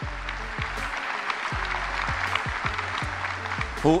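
A large audience applauding, over music with a steady, deep drum beat of about two to three strokes a second.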